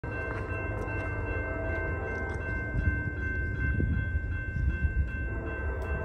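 Low, steady rumble of an approaching freight train, with a grade-crossing warning bell ringing steadily at about two strokes a second.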